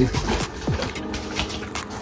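Plastic bag crinkling and crackling in irregular bursts as a wine kit's juice base pack is handled and its cap worked at by hand.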